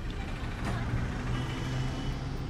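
Diesel engine of a state transport bus running steadily as the bus moves along, a continuous low drone.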